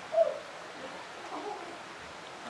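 Steady wash of stream water running through the gorge, with a short, slightly falling voice-like call about a fifth of a second in and a fainter one a little past the one-second mark.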